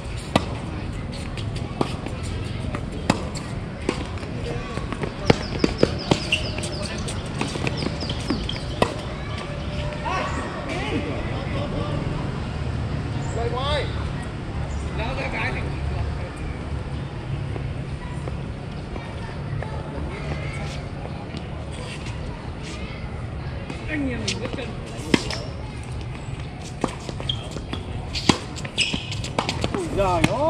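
Tennis balls struck by rackets and bouncing on a hard court during doubles rallies: sharp pops at irregular intervals, thickest in the first several seconds and again in the last few. A steady low rumble runs underneath.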